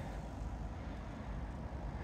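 Quiet, steady outdoor background rumble with no distinct event.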